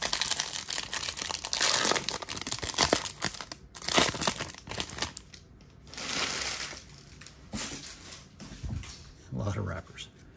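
Plastic wrapper of a baseball card pack being torn open and crinkled, an irregular crackling strongest in the first few seconds, with further brief rustles as the stack of cards is handled.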